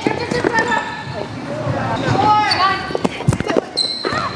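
Volleyball rally: the ball smacked by players' hands and forearms and hitting the floor in short sharp knocks, with players' voices calling out between hits.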